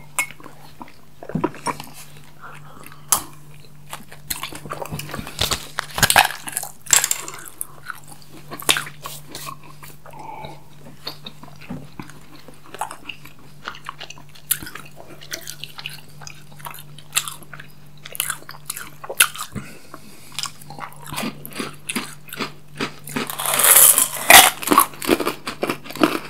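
Close-miked eating sounds: wet chewing, mouth clicks and occasional crunches of chocolate and sweets, irregular throughout, over a faint steady low hum. A louder rustling burst comes near the end.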